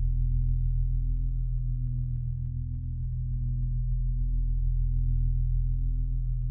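A steady low hum of several layered tones, with a soft pulse a little faster than once a second.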